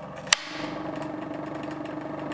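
A toggle switch clicks about a third of a second in, and the Bedini SSG energiser's drive coil then starts up with a steady hum: the coil kicking into action as the circuit is switched on with the magnet wheel spinning.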